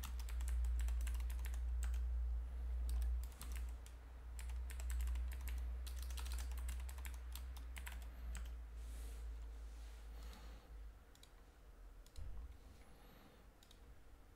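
Typing on a computer keyboard, with rapid runs of keystrokes for the first several seconds and then only a few scattered clicks, all over a low hum.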